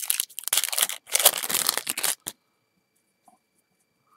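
A Topps football card pack's wrapper being torn open and crinkled in the hands, a dense crackle in two spells that stops a little over two seconds in.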